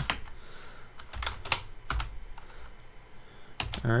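Computer keyboard being typed on: a handful of separate, unevenly spaced keystrokes as a short command is finished and entered.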